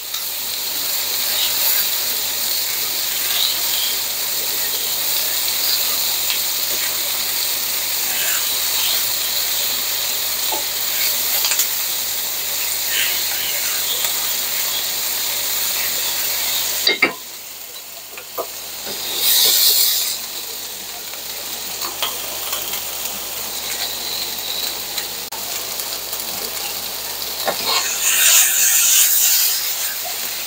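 Bell pepper strips, green onions and garlic sizzling in hot oil in a nonstick skillet, with tongs clicking and scraping against the pan as the vegetables are tossed. The sizzle drops off for a moment a little past halfway, and there are louder bursts of tossing after it and near the end.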